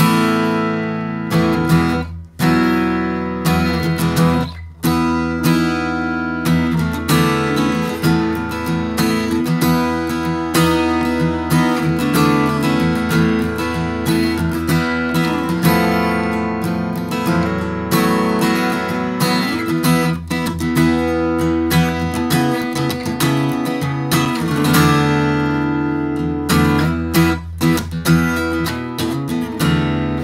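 A 1964 Gibson J-50 acoustic guitar strummed in loud chords, with two short breaks in the first five seconds. It is fitted with a Mitchel's PlateMate under the bridge and bone bridge pins, which the player hears as more upper mid-range and air on top and a slightly louder guitar.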